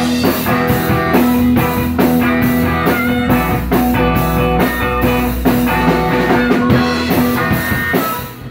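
Live band playing: harmonica played into a microphone over electric guitar and a drum kit, with a steady beat. The music breaks off suddenly at the very end, an aborted take.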